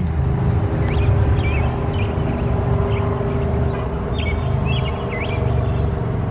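Short, high bird chirps repeated every second or so, more of them near the end, over a steady low rumble with a constant hum.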